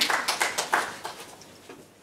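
Audience applauding after a talk, the claps thinning and fading away over about two seconds.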